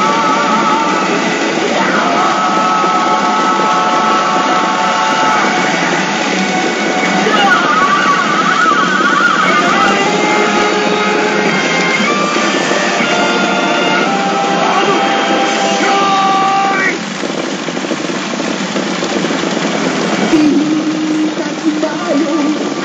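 Rock music with guitar playing from a pachinko machine's speakers during its battle sequence; the music drops away about seventeen seconds in, and a voice comes in near the end.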